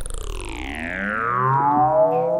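A man's long shout run through an electronic effect, so it comes out as a layered, warbling tone sliding steadily down in pitch.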